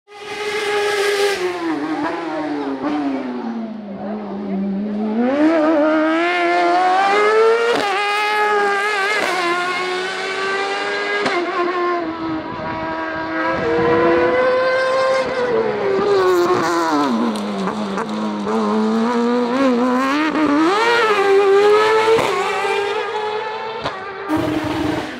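Racing car engine at high revs, its pitch dropping as it brakes and downshifts for corners and climbing again as it accelerates hard; the revs fall deeply twice, at about 3 and 17 seconds in.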